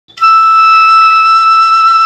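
A flute holding one long, steady high note, the opening of a song's instrumental introduction.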